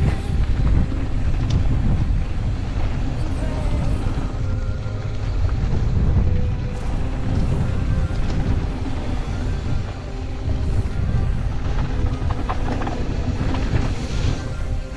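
Mountain bike descending a dirt bikepark trail: wind rushing over the camera microphone and the low rumble of tyres and frame over the loose, bumpy ground, with background music underneath.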